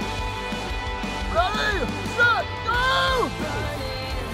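A person yelling three times over background music. Each yell rises and falls in pitch, and the last is the longest.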